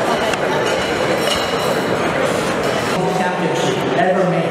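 Crowd chatter in a large hall, with scattered short clicks of camera shutters as the group poses for photos. About three seconds in, one man's voice begins over a microphone.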